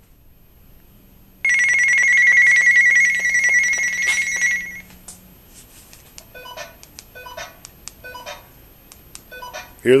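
Two-way radio call-alert tones: a loud electronic alert tone for about three seconds, then a run of fainter, muffled short tones from the walkie-talkie sealed inside a popcorn-tin Faraday cage. The tones getting out show that the radio signal is coming through the tin.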